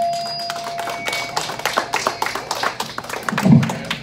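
A sustained electric guitar note rings and cuts off about a second in, then scattered, uneven clapping from a small audience, with one louder low thump near the end.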